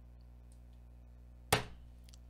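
One sharp knock about one and a half seconds in, over a low steady hum.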